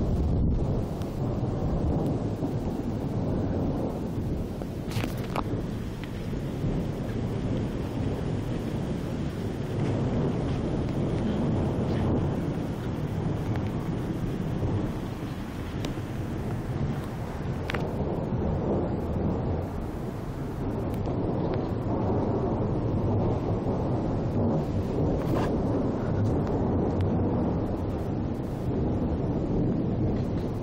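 Thunder rolling on without a break: a deep, continuous rumble that swells and eases over several seconds, with a few faint clicks.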